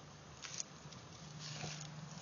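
Faint footsteps rustling through dry fallen leaves, a soft crunch about half a second in and lighter ones later.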